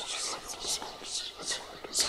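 A person whispering: short breathy hissing syllables, about three a second.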